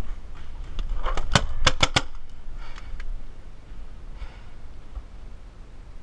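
Paintball fire: a quick string of about six sharp cracks starting about a second in, then two fainter ones shortly after.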